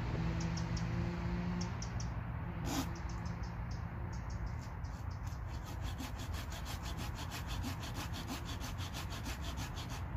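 Hand saw cutting through a wooden pole, stroke after stroke, shaping one end of a chair-frame leg. The strokes are irregular at first, with one sharp knock about three seconds in, then become quick and regular for the second half.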